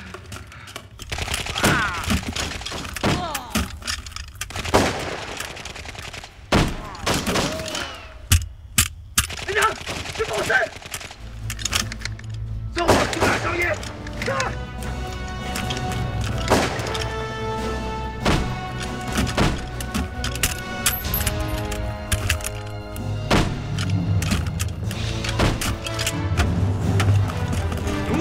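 Battle-scene film soundtrack: sharp gunshots and thuds come repeatedly, with shouted voices in the first half. About halfway through, a music score with a low drone and held notes comes in under the shots.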